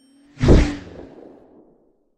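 Whoosh sound effect with a deep low hit at its peak, swelling up about half a second in and fading away over about a second: an animated logo-reveal stinger.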